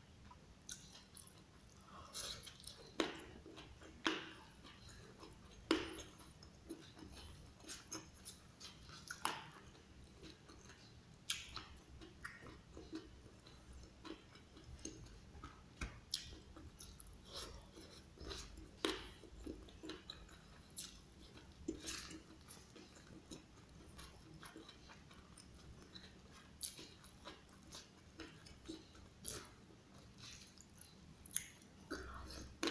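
Close-up chewing of raw leunca (black nightshade) berries and rice: quiet chewing broken by irregular sharp crunches and clicks, a few louder ones in the first few seconds.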